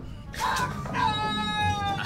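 A cartoon character's long, high-pitched cry from the animated show's soundtrack, held for about a second and sliding slightly down in pitch; by the picture it is C-3PO's yell.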